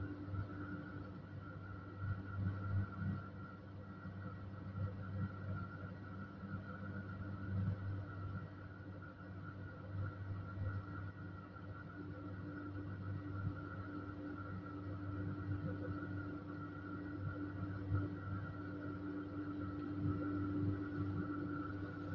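Moderus Gamma LF 03 AC low-floor tram standing still, heard from the driver's cab: a quiet, steady electrical hum from its onboard equipment, with two held tones, one low and one higher, over a gently wavering low rumble.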